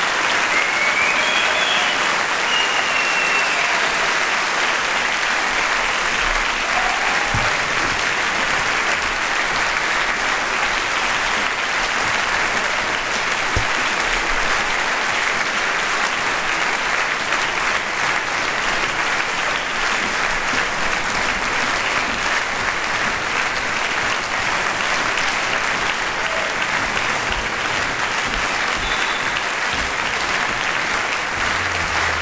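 A concert-hall audience applauding steadily, dense clapping throughout, with a brief rising whistle near the start.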